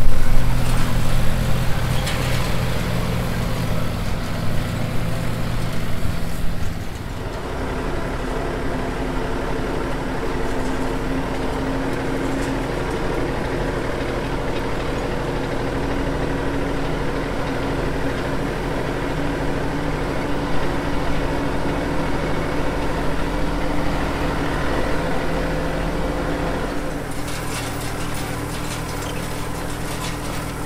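Rural King RK37 compact tractor's diesel engine running steadily as it pulls a wheel hay rake, loudest in the first few seconds and settling about seven seconds in. Light rapid clatter joins near the end.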